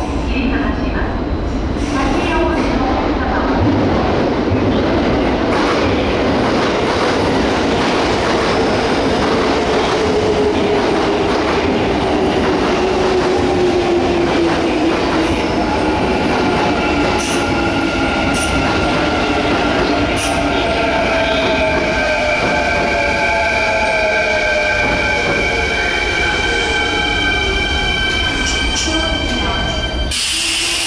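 An electric train running into an underground station platform: the rumble and clatter of wheels on rail, with the motors' whine gliding down in pitch as it brakes. In the second half, several steady high whining tones join in while further tones keep falling as the train slows.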